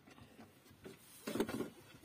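Low background noise with a brief, faint voice a little past halfway through; no engine or starter is heard.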